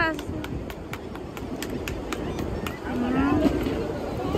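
A steady outdoor background rush with scattered faint clicks, and a short voice sound about three seconds in.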